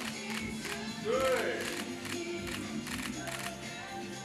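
Camera shutters firing in quick bursts of clicks for a posed photo shoot, over steady background music, with a voice counting "two" about a second in.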